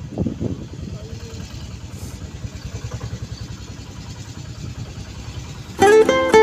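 A small auto-rickshaw engine running close by with a steady, rapid low putter, a voice briefly over it just after the start. Loud plucked-string music cuts in just before the end.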